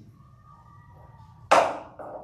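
A single sharp knock about one and a half seconds in, much louder than the voices around it, dying away in about half a second.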